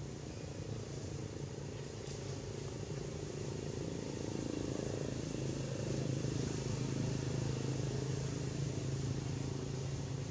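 A low, steady engine hum over faint outdoor background noise, growing louder about halfway through.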